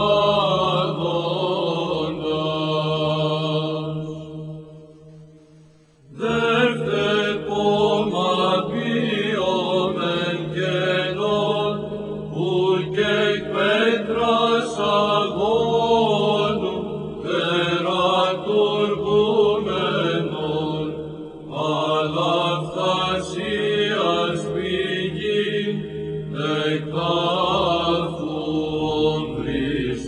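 Greek Orthodox Byzantine chant: a male voice sings a melismatic melody over a steady held drone (the ison). The sound fades almost away about five seconds in, then a new phrase begins.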